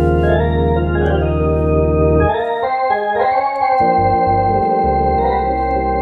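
Hammond Colonnade organ played with held chords over a deep pedal bass. The bass drops out a little past two seconds in, comes back as a few short notes, then holds steady again.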